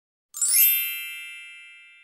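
A bright chime sound effect: a sparkling shimmer about a third of a second in, followed by a ringing tone that fades away slowly.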